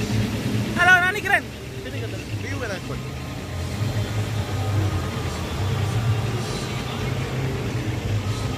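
A brief high, wavering vocal call about a second in, over a steady low rumble.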